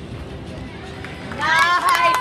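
Murmur of a busy gymnastics hall, then about one and a half seconds in, loud high-pitched cheering and shouts with a few claps break out, greeting a gymnast's beam dismount.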